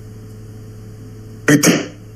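A phone line's steady low hum and hiss during a pause in a call. About one and a half seconds in comes a short, loud burst of the caller's voice or breath.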